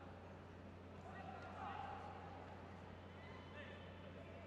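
Faint arena ambience: distant, indistinct voices over a steady low hum, with one voice a little more prominent between about one and two seconds in.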